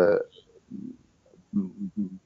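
A man's hesitant speech: a drawn-out 'uh' that trails off about a quarter-second in, then low, mumbled voice fragments near the end as he restarts the sentence.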